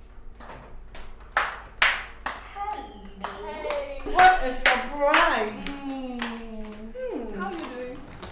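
A run of sharp hand claps, about two a second, joined about three seconds in by women's excited, wordless exclamations of greeting.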